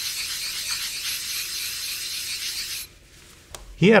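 A clay-like nagura-type surface-conditioning stone is rubbed back and forth across the face of a whetstone, making a steady gritty scraping that stops about three seconds in. The rubbing lays a thin slurry layer on the whetstone to keep it from glazing and loading with metal during sharpening.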